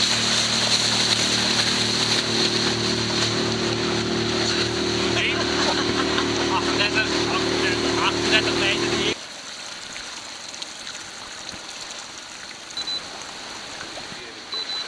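A 30-horsepower motorboat engine running at speed, a steady drone under the rush of wind and water, with a man's voice calling out over it in the middle. It cuts off suddenly about nine seconds in, leaving only a quiet wash of water.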